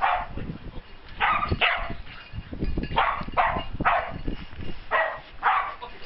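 A mountain rescue search dog, a black-and-white collie, barking excitedly in short sharp barks, singly and in pairs, about nine in all. This is the excitement of a search dog that has found a hidden person.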